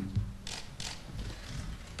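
A few short, sharp mechanical clicks about a third of a second apart, of the kind made by press photographers' camera shutters.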